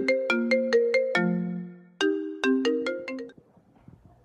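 iPhone ringtone for an incoming FaceTime Audio call: a melody of quick plucked notes in two phrases, stopping a little after three seconds in.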